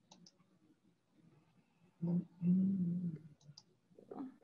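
Computer mouse clicks in two quick pairs, one pair at the start and another near the end. Between them, about halfway through, comes a short wordless voice sound, the loudest thing heard.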